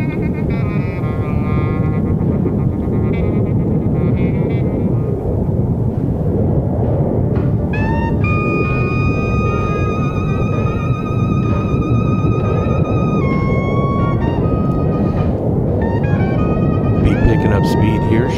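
Heavy wind rushing over a helmet-mounted camera's microphone as a bicycle speeds downhill. High-pitched squealing tones come and go on top, one held steady for about five seconds in the middle.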